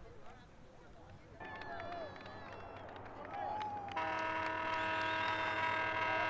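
Distant voices over an outdoor field microphone, then from about four seconds in a steady pitched tone, like a horn, holding for about three seconds.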